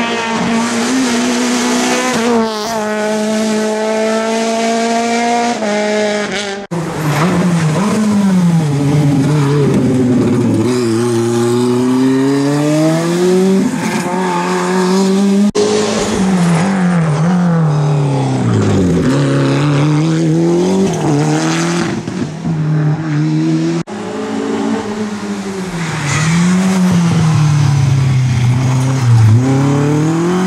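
Rally car engines driven hard on a tarmac stage, four separate passes joined by sudden cuts. Each car revs up through the gears, its pitch dropping on lifts and downshifts into the bends and rising again as it accelerates away.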